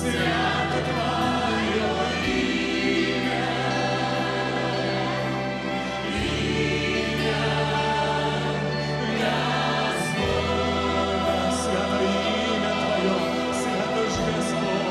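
A woman singing a gospel worship song into a microphone over instrumental accompaniment, with sustained bass notes that change every few seconds.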